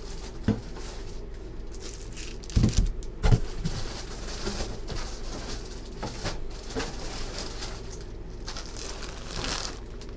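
Packing paper rustling and things being handled, with a few knocks on a hard surface, the loudest two about three seconds in.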